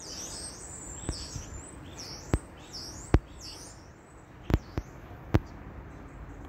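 A small songbird chirping outdoors in short, high notes that dip and rise, repeated several times through the first half. A handful of sharp, separate clicks or knocks cut through it, about a second apart and louder than the birdsong.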